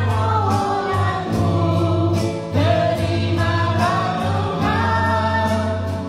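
A woman singing a Christian worship song into a handheld microphone in long held notes, over a backing track with a steady bass line and a regular drum beat.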